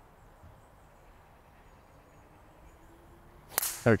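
Faint open-air background, then near the end a single sharp crack of a driver striking a golf ball off the tee.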